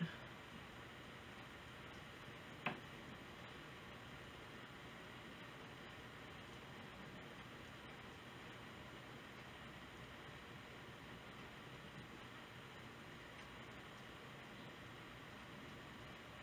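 Near silence: faint steady hiss of room tone, with a single sharp click a little under three seconds in.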